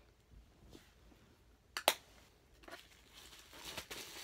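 A single sharp plastic click about two seconds in from handling a highlighter compact, followed by faint rustling and small clicks as hands move through a cardboard box.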